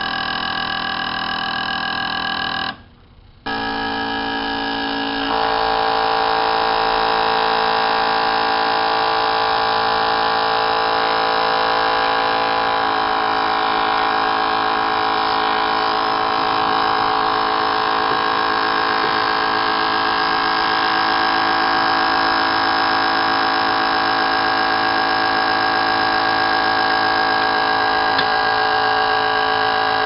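High-flow fuel injectors (500 lb/hr) being pulsed on an injector test bench and spraying fuel into the burettes: a loud, steady electric buzz of several tones with a hiss. It cuts out briefly about three seconds in, comes back louder with a different set of tones about five seconds in, and changes tone again near thirteen seconds.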